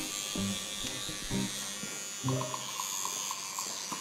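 Electric toothbrush buzzing steadily while in use in someone's mouth, with a few short low sounds over it in the first half.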